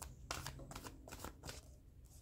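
A tarot deck being shuffled by hand: a faint, irregular run of quick papery clicks.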